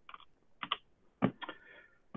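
Several quiet, sharp taps on computer keyboard keys, spread over the two seconds, as the presentation slide is advanced.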